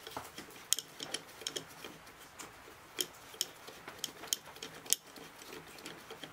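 Light, irregular metallic clicks and taps of a Veritas combination plane's depth stop being slid and set against a steel rule, with a few sharper ticks about three and five seconds in.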